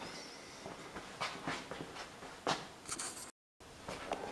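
Faint workshop room tone with a few light knocks and clicks of handling, about four in all, and no grinder running. The sound drops out completely for a moment shortly before the end.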